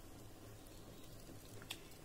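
Near silence: room tone with a faint low hum and one faint tick near the end.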